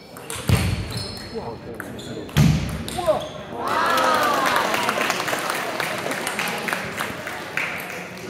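Table tennis rally in a sports hall: the plastic ball clicks sharply and repeatedly off bats and table. Two heavy low thumps come in the first few seconds, and a voice calls out about four seconds in.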